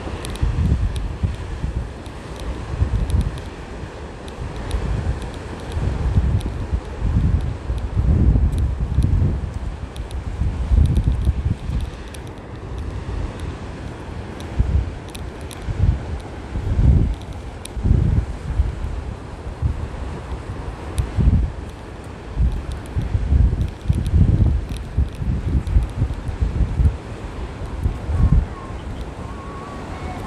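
Wind buffeting the microphone in irregular gusts, with a steady wash of surf from the beach underneath.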